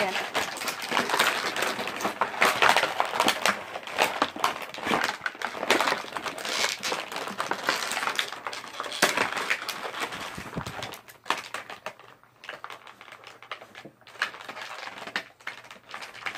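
Box packaging crinkling, rustling and clicking as figures are pulled out of their tight packaging, busy for the first ten seconds or so, then sparser and quieter.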